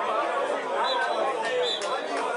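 Several voices shouting and calling over one another on a football pitch, a jumble of chatter with no single clear speaker.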